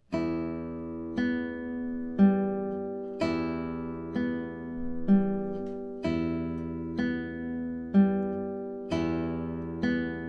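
Nylon-string classical guitar played slowly on open strings as a right-hand arpeggio exercise. Low and high E are plucked together, then the open B, then the open G, about one note a second. The three-note group repeats with the notes ringing over one another.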